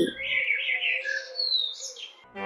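Birds chirping: a run of short high chirps with one clear falling whistle about a second and a half in.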